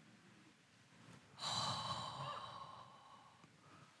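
A woman's long, breathy sigh, starting suddenly about a second and a half in and fading away over about two seconds.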